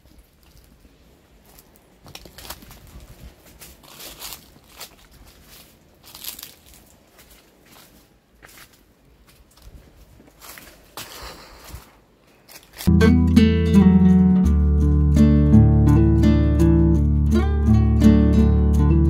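Faint, irregular footsteps crunching on dry leaf litter, then about thirteen seconds in, acoustic guitar music comes in suddenly and loudly.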